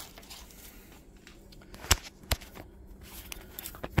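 Quiet handling at a tool chest as a tool is fetched from a drawer, with two sharp clicks about halfway through.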